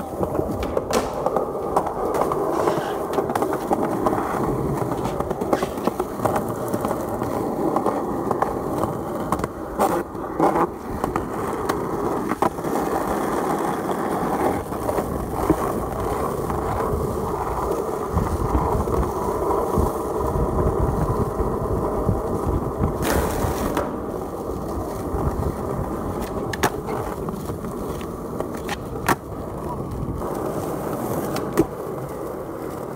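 Skateboard wheels rolling over rough asphalt with a steady rumble, broken now and then by the sharp clacks of the board popping and landing, and a short scrape near the end.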